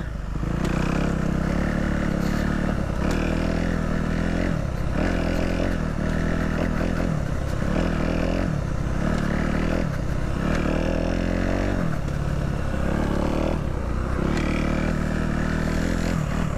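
Dirt bike engine running close to the microphone on rough ground, its pitch dipping and climbing back every second or so as the throttle is rolled off and on.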